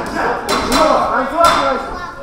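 Boxing gloves landing punches during an exchange: three sharp hits within about a second, over shouting voices.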